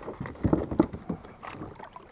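Irregular knocks and thumps on a plastic fishing kayak, loudest about half a second in, with lighter scattered clicks and rustles of branches against the hull afterwards.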